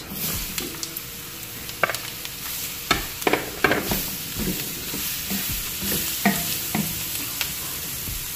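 Julienned carrots sizzling in hot oil in a wok as they are tipped in and stirred, with a wooden spoon scraping and knocking against the pan several times.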